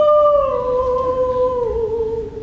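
A woman singing solo, holding one long note that slides down in pitch twice.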